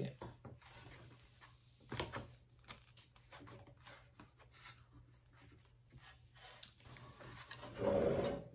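Faint scattered clicks, taps and rustles of hands handling small craft items on a tabletop and pressing them into place, with a sharper knock about two seconds in.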